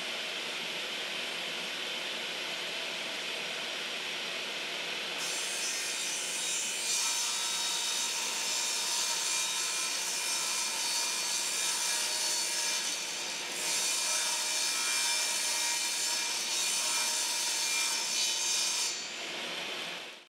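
Bosch 4100-10 10-inch table saw running and ripping a sheet of quarter-inch MDF-core plywood. The blade's sharper cutting sound comes in about five seconds in, breaks off briefly a little past halfway, then carries on until just before the end.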